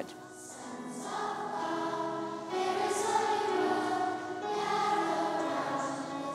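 A children's choir singing slow, held notes, fading in over the first couple of seconds and then holding steady.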